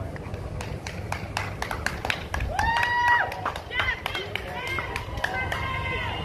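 Voices calling out over steady outdoor street noise, with a quick run of sharp clicks and taps like footsteps on pavement. A held, steady tone comes in near the end.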